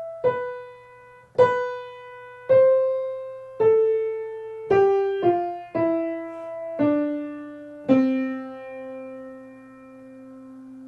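Piano playing a slow single-line melody for melodic dictation, one note at a time about a second apart, with a quicker pair of notes midway. The line steps downward and ends on a low note held for about three seconds.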